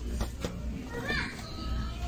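Children's voices and chatter, with a short high-pitched cry about a second in.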